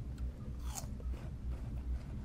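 Biting into and chewing a crisp wax apple (Vietnamese mận), with the crunchiest bite about three-quarters of a second in.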